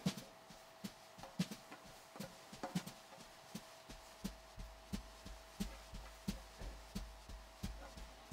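Soft, irregular taps and light rustles of hands folding and pressing a cloth pocket square flat on a wooden tabletop, two or three small knocks a second, over a faint steady hum.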